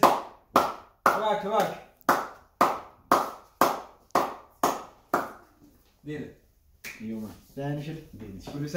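Rhythmic hand clapping in a small room, about two claps a second, mixed with short voiced calls, for about five seconds. Then it stops and talk follows.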